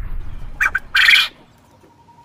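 A low rumble fades away, then a bird squawks: two short calls just over half a second in and a louder, longer squawk about a second in.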